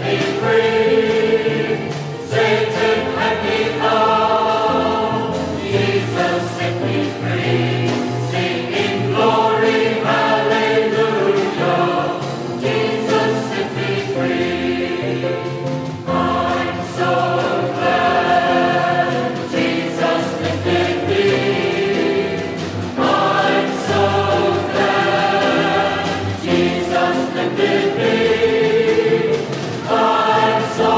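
Salvation Army songster choir singing a gospel song in harmony, in long sustained phrases.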